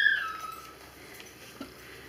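Dog giving a single short high whine that falls in pitch and fades within a second, followed by a faint tap about a second and a half in.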